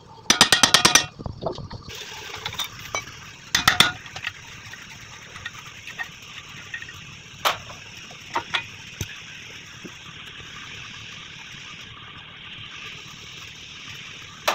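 Ratchet wrench on a Bolero pickup's front wheel hub, its pawl clicking in a quick run of about eight clicks near the start and another short run about four seconds in. A few single metal clinks follow over a steady hiss.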